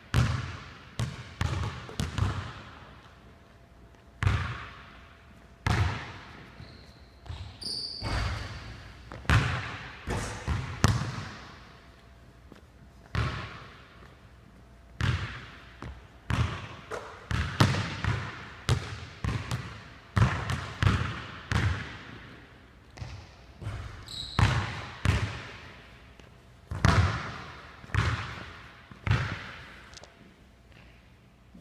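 Basketball bouncing on a hardwood gym floor and striking the backboard and rim as shots are taken, a string of separate thuds every second or two, each echoing in the large empty gym. A couple of brief high squeaks come in between.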